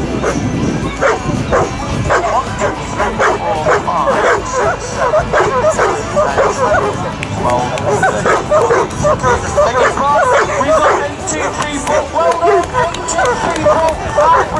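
Several Newfoundland dogs barking and yipping excitedly, many short overlapping calls with hardly a break, over the chatter of people.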